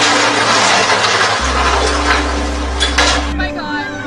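Loud crash and rushing splash as a toppling crane slams onto a boat and into the water, with a couple of sharper impacts near the end. It cuts off abruptly a little over three seconds in.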